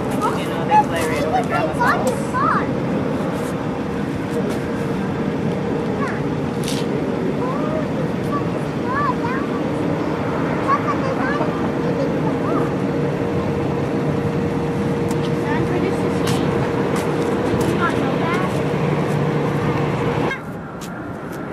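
Airbus A320 airliner's jet engines running steadily at low power as it rolls along the runway after landing: a continuous low rumble with a steady whine.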